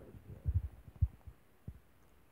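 Handling noise on a phone's microphone: a few dull, low thumps, the sharpest about a second in and a smaller one shortly before the end.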